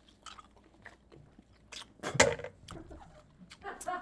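Close-miked chewing of soft, taffy-like Hi-Chew candy: scattered wet mouth clicks and smacks, with a brief vocal sound about two seconds in.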